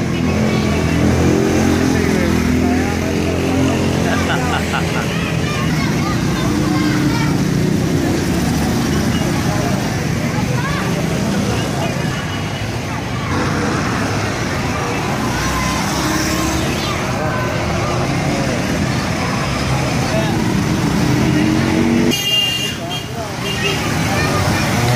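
Several motorcycle engines and a quad bike running as they ride slowly past, with a crowd talking and calling out throughout.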